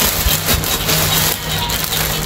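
Plastic mailer bag crinkling and rustling as it is handled, over background music.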